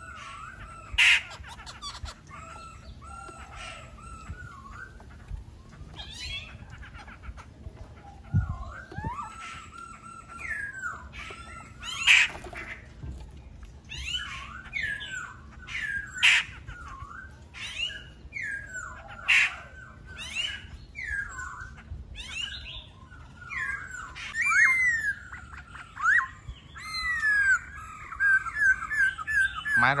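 Caged laughingthrush (khướu) singing: repeated clear whistled phrases with sliding notes, broken by a few loud, sharp calls. The song grows quicker and busier over the last few seconds.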